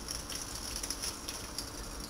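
Faint handling noise from a cut-off plastic bottle filled with wet sand held in the hands: scattered small clicks and crinkles over a steady hiss.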